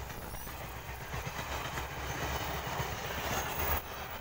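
Heritage passenger carriages of a locomotive-hauled train rolling past on the track, a steady rumble of wheels and bogies on the rails as the rake goes by.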